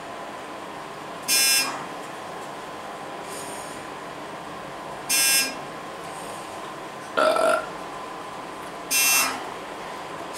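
Dover hydraulic elevator, modernized by ThyssenKrupp, travelling up with a steady hum and a thin constant whine. A short harsh buzz from the car's signal sounds three times, about four seconds apart. A different brief two-note sound comes between the second and third buzz.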